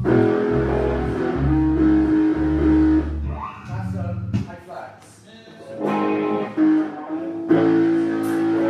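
Electric guitar and electric bass played through amplifiers in a loose warm-up, holding notes and chords over a low bass line. Around the middle the bass drops out and the playing thins to a brief lull, then picks up again with a loud guitar chord near the end.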